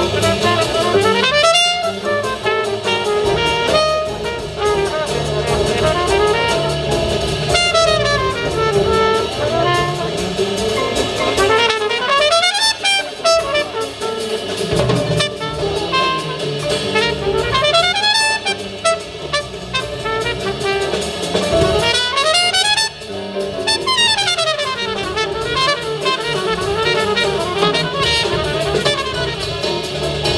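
Live jazz quartet: a trumpet solos in quick runs that climb and fall in pitch, over piano, upright double bass and drum kit.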